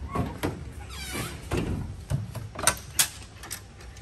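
Diamond-plate aluminium truck-bed toolbox being opened: handling rattles, a brief squeal about a second in, and two sharp metallic clicks near the end as the drop-down lid comes open on its chains.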